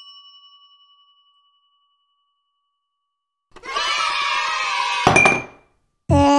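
A bell-like ding rings out and fades away over about a second, followed by silence. About halfway through, a couple of seconds of wavering pitched sound from the background music come in, with a click near their end.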